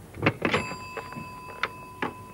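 Desk telephone handset picked up and handled: a few sharp plastic clicks and knocks, then another click later. A faint steady high tone starts about half a second in and holds.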